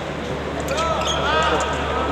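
Steady hum and background noise of a large hall. From a little under a second in, a person's voice calls out in short rising-and-falling tones.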